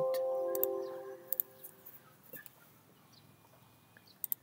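Windows warning chime as a software warning dialog pops up: a chord of several clear tones that fades away over about two seconds. A few sharp mouse clicks follow.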